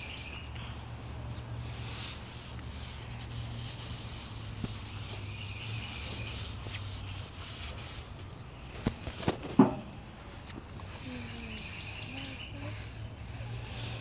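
Backyard ambience: insects chirping in repeated bursts over a steady low hum, with a few sharp knocks about nine seconds in.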